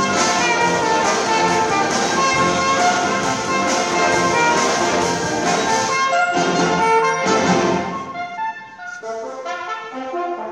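Symphony orchestra with a brass soloist playing live, strings and brass together in a full, dense passage. About eight seconds in the full ensemble drops back to a thinner, quieter texture.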